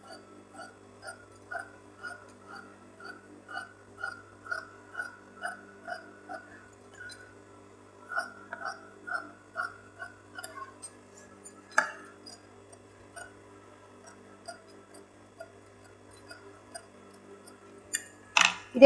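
Tailoring shears cutting through silk blouse fabric and its paper-canvas backing, a soft snip about two to three times a second for roughly the first eleven seconds, then one sharper click about twelve seconds in. A faint steady hum runs underneath.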